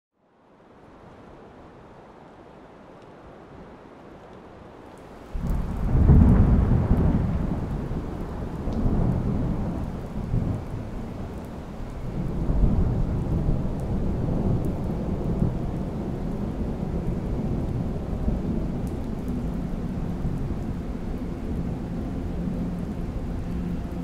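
Thunderstorm: a faint hiss, then a sudden loud crack and rumble of thunder about five seconds in. The thunder keeps rolling in low swells over steady rain.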